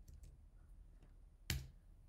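Faint computer keyboard clicks, then a single sharp key press about one and a half seconds in.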